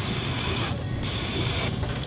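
Mud Tools trimming tool scraping leather-hard clay off the base of a bowl turning on a potter's wheel, in two stretches of scraping with a short break about three-quarters of a second in. A steady low hum runs underneath.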